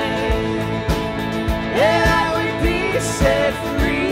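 Live worship band playing a song: acoustic guitar and bass guitar over a steady low beat of about two thumps a second, with a singer's voice rising and falling on held notes.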